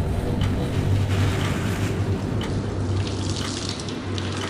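Water running from a hose forced into a python's mouth, a steady rushing splash, over a low steady hum. The snake is being filled with water to bloat it before skinning.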